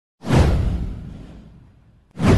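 A whoosh sound effect with a deep low end. It comes in sharply just after the start, then falls in pitch and fades away over about a second and a half.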